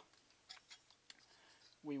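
A few faint, sharp clicks and ticks from hands working at the aluminium cooling fins of a microwave-oven magnetron, spread over the first second or so.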